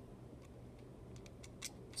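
Faint clicks and light taps of two die-cast Hot Wheels Ecto-1 toy cars being handled and turned over in the fingers, with a slightly louder click near the end, over quiet room tone.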